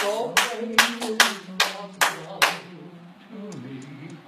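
Hand clapping in a steady beat, about two to three claps a second, stopping about two and a half seconds in, with a low voice holding a note underneath.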